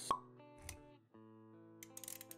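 A sharp pop sound effect just after the start, then a soft low thud, over background music with held notes that drops out for a moment about a second in.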